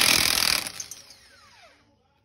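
Milwaukee cordless impact wrench spinning a lug nut loose on the car's wheel. It runs hard for about half a second, then the motor winds down with a falling whine.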